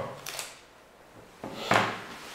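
Chalk writing on a blackboard: short tapping and scraping strokes, the loudest near the end.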